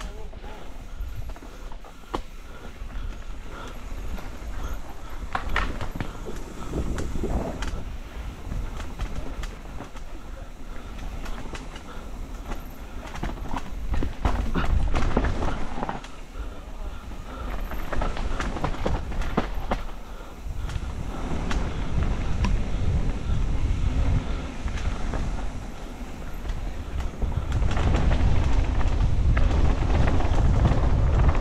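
Mountain bike descending a dirt singletrack: chain and frame rattling, with frequent sharp knocks as the wheels hit bumps and roots. Wind on the microphone rumbles underneath and grows louder near the end as the speed picks up.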